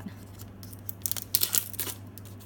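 Foil wrapper of a Pokémon trading card booster pack being torn open and crinkled by hand, with a burst of sharp crackles in the second half.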